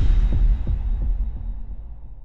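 Deep bass hit from a logo-intro sound effect, followed by a few low pulses about a third of a second apart that die away.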